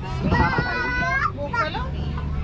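A young child's high-pitched, wordless voice: one long held call starting just after the start, then a couple of short ones.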